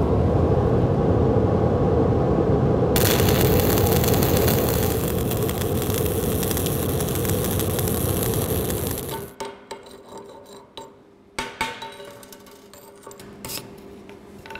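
Stick (SMAW) welding with an E6013 electrode: a steady rushing noise, joined about three seconds in by the crackle and hiss of the arc, which cuts off suddenly about nine seconds in. After that come quieter scattered clicks and scrapes of metal.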